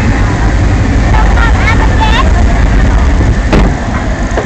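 Log flume boat running down a fast water channel: loud rushing water with wind buffeting the microphone. A rider's voice cries out briefly about a second in, and there is a sharp knock near the end.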